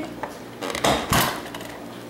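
Trouble's Pop-O-Matic dice bubble pressed: the plastic dome snaps and the die rattles inside it in a short clattering burst about a second in.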